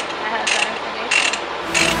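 A short mechanical rasp repeated evenly, three strokes about two-thirds of a second apart, with music coming in near the end.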